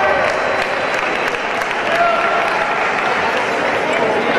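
Spectators applauding steadily for a touch just scored in a sabre bout, with voices mixed in.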